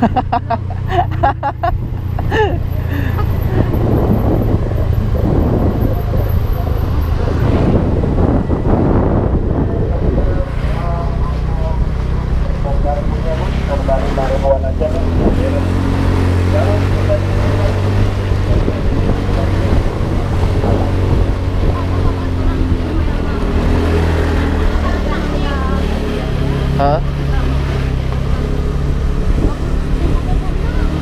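Small motorcycle engine running steadily while being ridden along a road.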